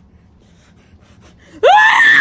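A young man's loud, high-pitched wail, starting suddenly near the end with a sharp upward sweep in pitch and then held.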